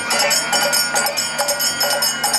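Kirtan accompaniment: metal hand cymbals struck in a fast, steady rhythm.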